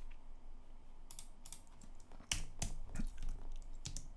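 Typing on a computer keyboard: a few quiet key clicks, then a quicker run of keystrokes in the second half.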